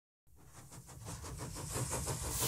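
Steam engine chuffing rhythmically at about six or seven beats a second over a low rumble, fading in from silence and growing steadily louder.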